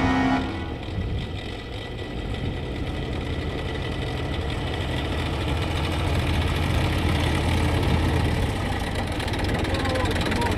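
Tractor engine running as the tractor drives up and draws near, its low, steady rumble growing gradually louder. A brief bit of music cuts off about half a second in.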